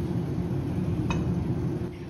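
Flour tipped from a measuring cup into a stainless steel mixing bowl, with one light clink about a second in, over a steady low background hum.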